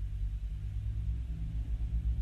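A low, steady rumble and hum with no speech over it.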